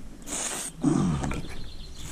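A hardwood pointing stick scrapes along a lime mortar joint in brickwork as the pointing is finished, in one short scratchy stroke about half a second in. A low wordless grunt or hum follows about a second in.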